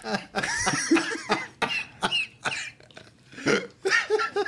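Men laughing hard in short, irregular fits that break into coughing, with a brief lull about three seconds in.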